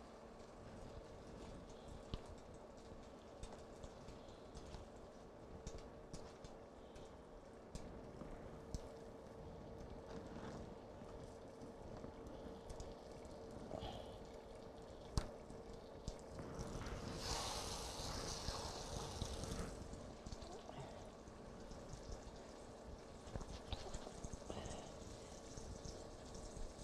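A floured, egg-washed chicken breast sizzles for a few seconds a little past the middle as it goes into a fry pan of melted butter. The rest is a quiet kitchen with light handling clicks and a faint steady hum.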